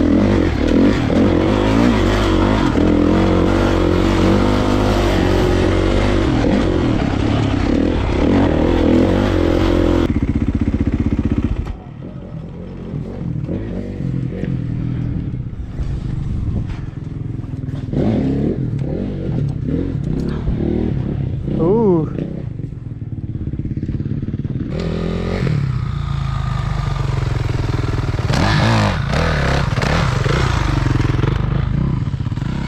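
Kawasaki KX450 single-cylinder four-stroke dirt bike engine running under throttle while riding, with wind noise on the helmet microphone. About ten seconds in it cuts to a quieter stretch of the engine idling, with a few short rising revs.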